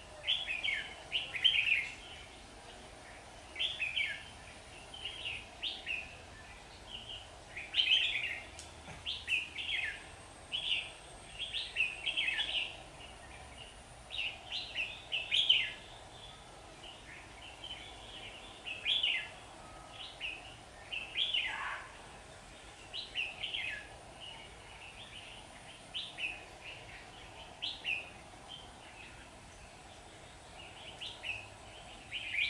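Red-whiskered bulbuls singing: short, loud whistled phrases one after another, every second or so, with one longer falling phrase a little after two thirds of the way through. The singing comes from a caged decoy bulbul and the wild bulbuls drawn to it, in a competitive song exchange.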